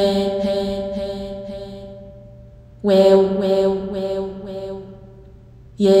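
A voice chanting Arabic letter names, each said several times in quick succession on one held pitch, so the letters run together like a chant. The letter haa comes at the start, a second letter about three seconds in, and 'ya' right at the end.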